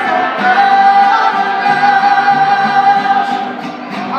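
Mariachi singer performing live with the band's violins and guitars behind him, holding one long note for a couple of seconds before the music eases off near the end.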